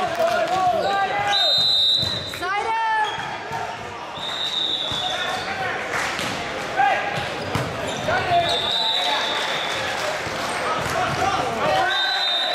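Volleyball being played in an echoing gymnasium: the ball being struck and hitting the floor, sneakers squeaking on the hardwood court, and players and spectators calling and chatting. Short high squeaks come several times.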